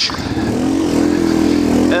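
Yamaha TT-R230's single-cylinder four-stroke engine running under way at a steady pace, its note climbing a little in the first second and then holding.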